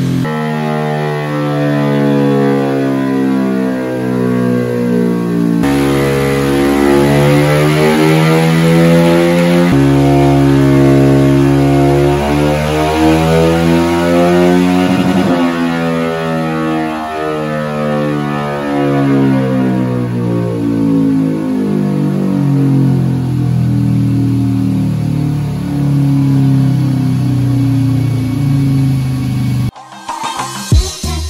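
Background music with a melodic line, mixed with a bored-up Honda Vario 125 single-cylinder scooter engine revving up and down on a chassis dyno.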